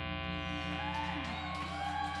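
A live rock band's last chord ringing out through the amplifiers and slowly fading. From about halfway through, faint gliding whoops from the audience come in.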